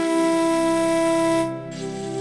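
Film background music: a loud held wind-instrument note, flute-like, over a sustained low drone. The note ends about one and a half seconds in, and the drone carries on.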